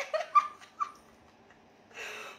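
A woman's short, high-pitched laughing sounds in the first second, then quiet; a brief breathy hiss right at the end.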